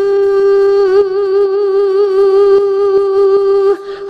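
Isolated female pop lead vocal with the backing music removed, holding one long sung note. The note is steady at first, then takes on a slow vibrato, and breaks off near the end as a new phrase begins.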